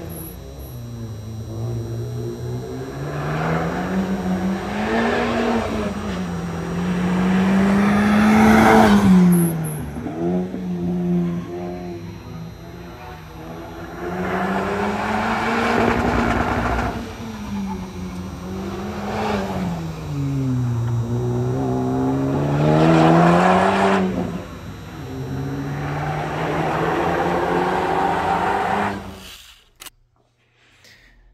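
Honda Civic Type R FK8's turbocharged 2.0-litre four-cylinder engine being driven hard, its revs repeatedly rising and falling as the car accelerates and slows. The sound cuts off abruptly near the end.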